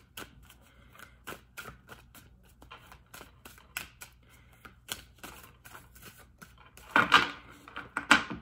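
Tarot deck shuffled by hand: a run of light, irregular card clicks and flicks, with a louder rush of cards about seven seconds in.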